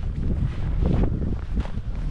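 Footsteps in fresh snow, a few steps about half a second apart, under steady wind rumbling on the microphone.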